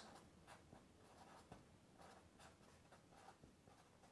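Black Sharpie marker writing a word, heard as a faint run of short strokes of the felt tip on the drawing surface.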